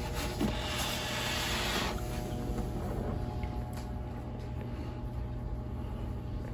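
Brief rustle of hands handling the eggs, about a second in and lasting about a second, over a steady low electrical hum.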